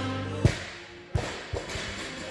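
A loaded barbell with bumper plates is dropped onto a rubber gym floor. It lands with one loud thud about half a second in, then bounces twice, each bounce quicker and quieter, over background music.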